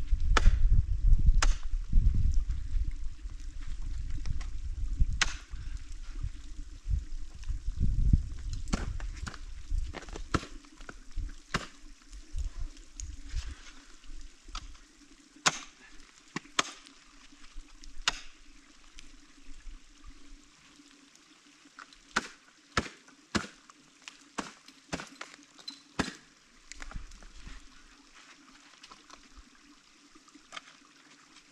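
Ice tools and crampon points striking into a frozen icefall: separate sharp strikes, a second or two apart and sometimes in quick pairs. A loud low rumble runs under them for the first ten seconds or so, then dies away.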